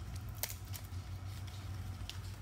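Leaves and branches of a young coffee plant rustling as they are bent by hand, with a few short light clicks, over a steady low hum.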